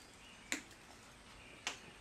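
Two short sharp clicks about a second apart from a handheld jar of crushed salt, its top being opened and shaken out, with faint room tone between.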